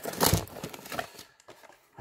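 A cardboard trading-card blaster box being handled as its top flap is pulled open: a short cardboard rustle about a quarter second in, then a couple of faint ticks.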